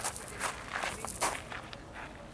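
Footsteps of someone walking, a few irregular steps.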